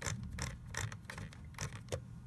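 Rapid ratcheting clicks of a Nikon D70's command dial being turned, about five a second. It steps the aperture one click at a time from f/13 down to f/2.5, the widest aperture programmed into the lens chip.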